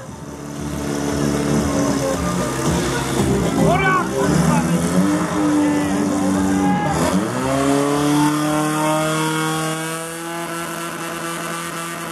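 Portable fire pump engine running hard at high revs. Its pitch dips briefly about seven seconds in, then holds a steady note while it pushes water out through the attack hoses.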